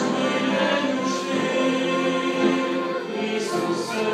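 Church congregation singing a hymn together, led by a man on a microphone, the voices holding long, drawn-out notes.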